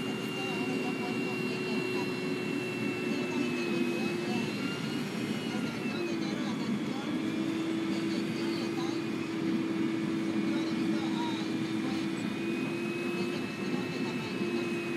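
Cotton module truck running while loading a module onto its tilted bed: a steady engine drone with a whining tone from the loading drive that briefly dips in pitch about six seconds in.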